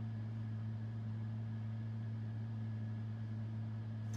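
Steady low hum inside a combine cab, even throughout, with no distinct clicks or knocks.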